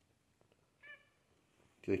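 Seal point Ragdoll cat giving one short, high meow about a second in.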